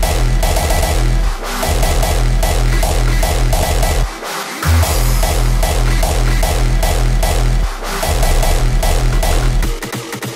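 A hardstyle track playing back loud from the mastering session, with heavy kick and bass under a synth melody; the master meters about −8 LUFS integrated. The bass drops out briefly three times.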